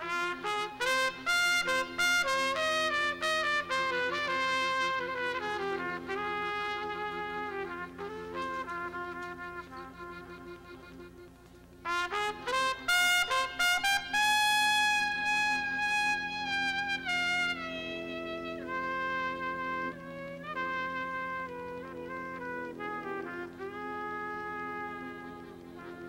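Trumpet playing a slow, ornamented klezmer melody over a held low chord, in two long phrases. The first starts loud and fades away; the second comes in loud about twelve seconds in.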